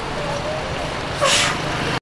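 Town street traffic noise, steady, with a brief louder rush of noise about a second and a quarter in.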